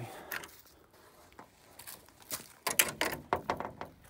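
A quick, irregular run of light clicks and knocks lasting about a second and a half, starting past the middle: hard objects being handled and knocked together.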